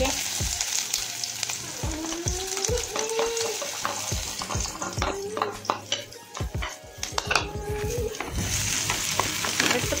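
Onions sizzling in hot oil in a frying pan, with a spatula scraping and clicking against the pan as they are stirred.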